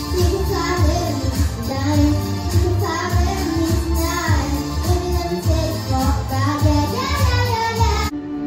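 A young girl singing into a microphone over a backing track with a steady pulsing bass beat.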